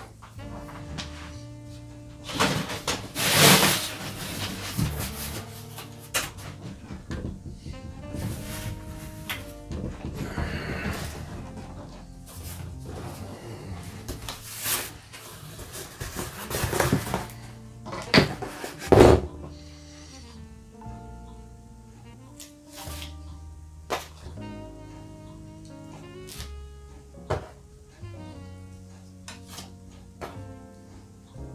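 Soft instrumental background music with steady held notes. Over it come several sharp knocks and rustles, loudest about three seconds in and again near the twenty-second mark, from stencils and paper being handled and lifted off a gel printing plate on a wooden table.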